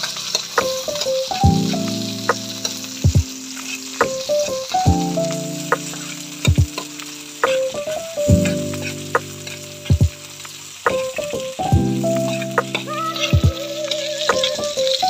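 Chicken, lemongrass stalks and garlic sizzling as they stir-fry in a hot steel wok. A metal ladle stirs them, scraping and knocking against the pan again and again.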